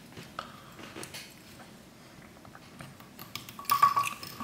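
A few faint clicks and clinks from handling small metal fly-tying tools at the vise, with a louder clatter of clicks near the end.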